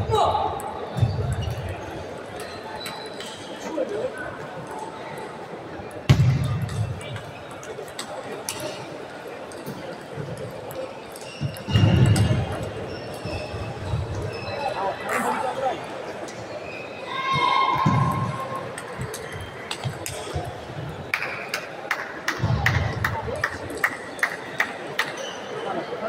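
Table tennis balls clicking off paddles and tables, short sharp ticks at irregular times from rallies at the surrounding tables, with people's voices in between.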